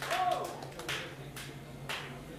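A short voiced call that rises and falls in pitch, then three sharp clicks about half a second apart, over a low steady hum from the stage sound system.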